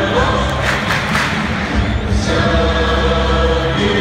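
Music played over a stadium's public address with a large crowd singing along, held notes over the noise of the stands.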